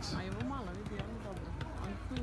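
Footballs being juggled on feet, light irregular taps of the balls, under quiet murmuring voices of children.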